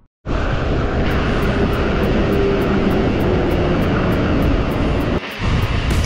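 Steady rushing wind noise on an action camera's microphone while cycling at speed beside highway traffic. It starts abruptly just after the start and briefly drops out about five seconds in, with a faint regular ticking beat of background music over it.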